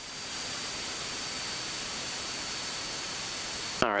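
Steady hiss from a light aircraft's cockpit intercom and radio audio feed, with a faint, steady high whine running through it.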